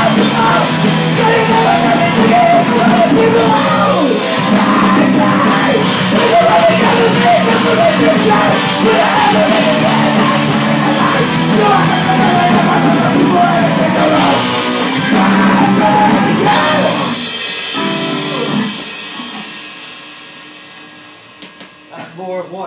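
Rock band playing live: distorted electric guitar, bass guitar and drum kit with shouted vocals. About three-quarters of the way through the playing stops, and the last chord rings out and fades away.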